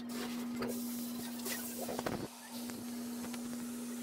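A steady low hum under a faint hiss, with a few light clicks and a soft knock about two seconds in.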